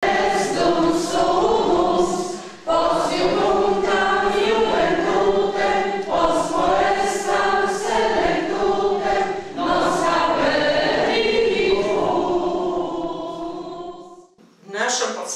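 A large audience of men and women sings a student song together. A short dip at about two and a half seconds falls between phrases.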